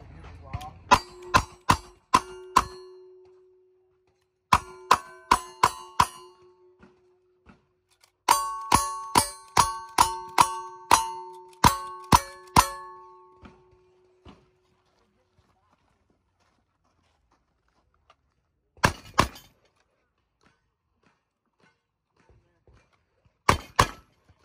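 Cowboy action shooting stage: two strings of five gunshots, then about ten fast lever-action rifle shots. Each hit is followed by steel targets ringing. Two more pairs of shots without ringing come in the last few seconds.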